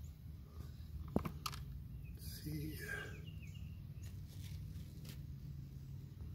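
Faint rustling and a few light clicks as a wadded paper towel is pulled out of an open intake port on the engine's cylinder head, over a steady low hum.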